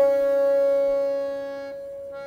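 Harmonium holding steady notes of the lehra while a loud tabla stroke, struck just before, rings out and fades. The harmonium's lower note drops out near the end.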